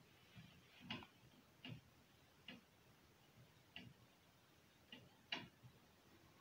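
Faint, short ticks of a marker pen writing on a whiteboard, about six of them at irregular intervals, the loudest a little after five seconds in.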